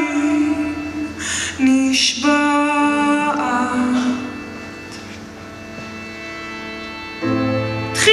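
Live band music with a woman singing long held notes over the accompaniment; the sound drops to a quieter held passage in the middle, and a low sustained note comes in near the end.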